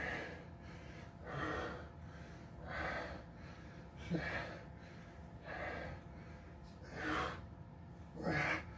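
A man breathing hard from exertion during fast dumbbell rows, with a forceful breath about every second and a half.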